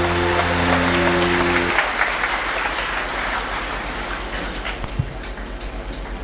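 Audience applause that fades away, under a held closing chord of the music that cuts off about two seconds in.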